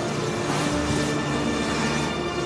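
Background music from a drama underscore: a sustained, droning synth chord with steady held notes.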